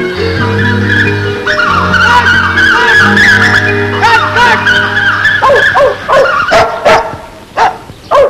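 Film background music with long held low notes, then a dog barking several times in the last two or three seconds.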